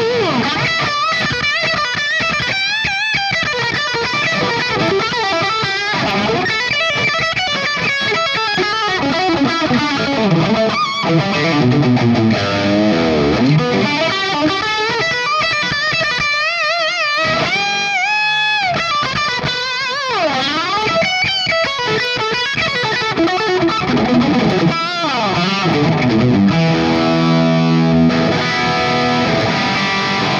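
Electric guitar played through a valve amp distorting with Jose-style 20-volt Zener diode clipping: fast lead runs with vibrato and bends, turning to held notes and chords near the end.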